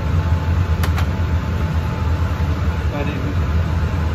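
Steady low hum of a laminar flow hood's blower fan, with a light click of glass about a second in as a jar is handled.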